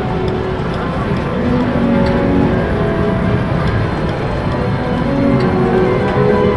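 Bally Titanic video slot machine playing its music and short electronic tones while the reels spin, over a steady background din.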